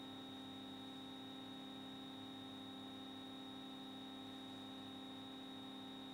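Faint, steady electrical hum with a thin high whine above it, unchanging throughout; no other sound.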